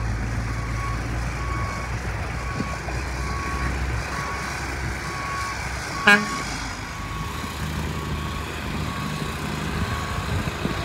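A backup alarm beeps steadily about twice a second over a dump truck's low diesel rumble. About six seconds in there is one short, loud horn toot.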